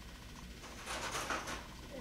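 Quiet room tone with faint, brief rustles about a second in, from small wooden and cork craft pieces being handled on a table.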